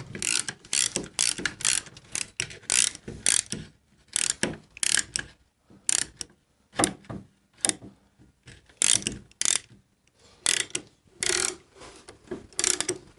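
Lift jack under a motorcycle being worked with a long handle, ratcheting in a series of short clicking strokes with brief pauses, raising the rear wheel off the lift deck.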